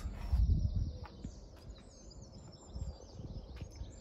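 Small birds chirping and twittering in short high calls, over a low wind rumble on the microphone that is strongest in the first second.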